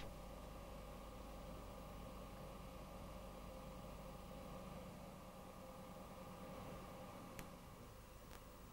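Very quiet steady hiss with a low hum, with a short click at the very start and a faint click near the end.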